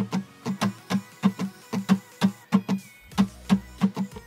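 Steel-string acoustic guitar strummed with a pick in a repeating down, down, up, up, down pattern, several strokes a second, the chord ringing between strokes.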